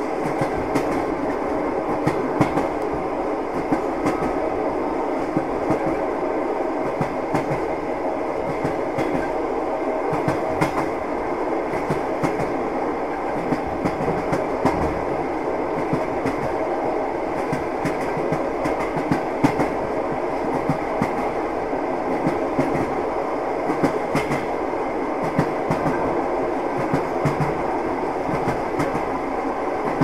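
Moving passenger train heard from inside the carriage: a steady rumble of wheels on rails, with irregular clicks and knocks from the wheels and track.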